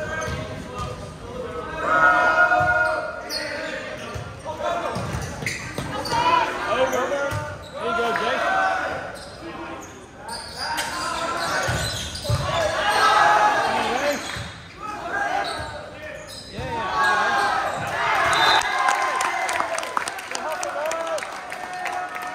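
Volleyball rally in an echoing gym: players and spectators shouting and calling out over one another, with thuds of the ball being struck and hitting the floor.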